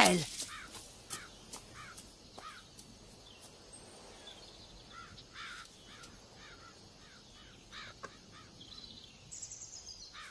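Quiet outdoor ambience of birds calling: a run of short calls repeated a few times a second, over a faint background hiss.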